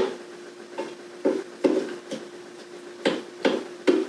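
A spoon stirring chicken and peppers in a Ninja Foodi air-crisp basket, knocking and scraping against it about six times at uneven intervals, over a steady faint hum.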